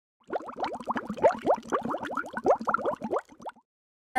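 Bubbling water sound effect: a quick, dense run of short rising plops, many each second, lasting about three seconds and stopping abruptly.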